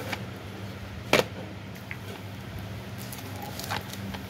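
Shrink-wrapped plastic audio cassette cases being handled: one sharp clack about a second in and a few lighter clicks and crinkles later, over a steady low hum.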